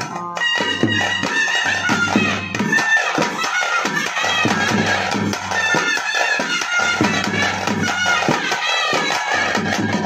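South Indian traditional ritual music: a reed wind instrument plays a melody over steady rhythmic drumming.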